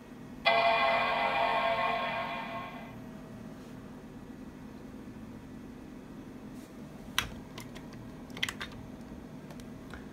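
Intel Mac mini's startup chime: a single chord that sounds about half a second in and fades away over a couple of seconds, the sign that the machine has powered on and begun to boot. A few faint clicks follow later.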